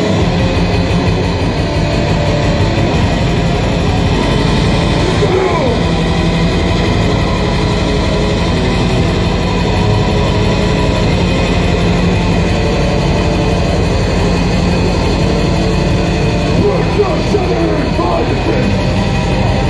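Black metal band playing live, heard from within the crowd: loud distorted guitars over very fast, unbroken drumming, with harsh vocals.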